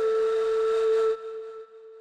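Film-score music ending on one long held note, which cuts off about a second in and leaves a faint ring fading away.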